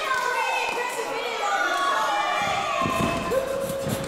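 Background crowd voices in a hall, then, from a little past halfway, a run of dull thuds from the wrestling ring as the two wrestlers lock up and start grappling.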